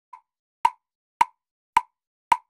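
Metronome click track of an in-ear monitor mix counting off the tempo: a faint first click, then three sharp, identical clicks evenly spaced a little over half a second apart, about 108 beats a minute.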